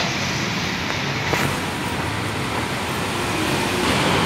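Steady city street traffic noise: a continuous hum of passing vehicles, growing a little louder about a second and a half in.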